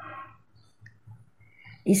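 A short pause in a woman's speech: a soft breath, a single faint click a little before one second in, and her voice starting again at the very end.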